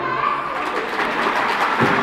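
Audience applauding, an even patter of many hands, just after the routine's music cuts off.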